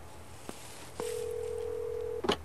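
Telephone ringback tone heard by the caller: one steady, single-pitched beep lasting a little over a second, starting halfway through, as the called phone rings at the other end. A faint click comes just before it.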